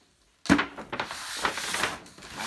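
A white Apple paper shopping bag set down on a wooden desk with a single knock about half a second in, then the stiff paper rustling as it is handled.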